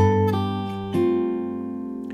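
Steel-string acoustic guitar played fingerstyle with a capo: three plucked notes over an E major chord, at the start, about a third of a second in and about a second in, each left ringing and slowly fading. This is a passage where the high E string keeps sounding across the change.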